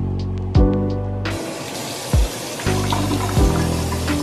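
Bathroom faucet turned on about a second in, water running into the sink in a steady rush that stops abruptly just at the end. Background music with a beat of deep kick drums plays throughout.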